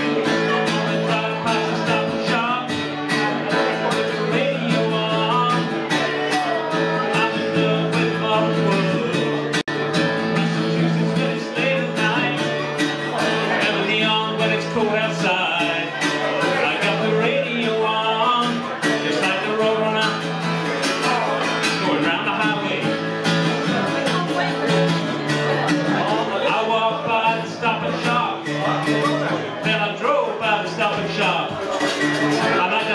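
Acoustic guitar being strummed, chords played continuously at a steady level.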